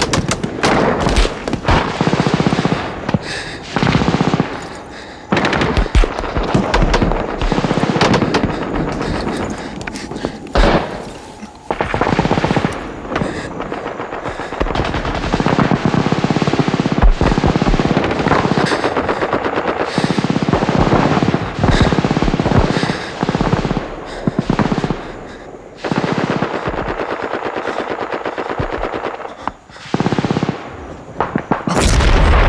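Film battle sound effects: long bursts of rapid machine-gun fire, broken by short pauses a few times.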